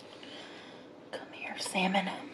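A woman's soft murmured voice, a short voiced sound in the last half second, after a faint click about a second in.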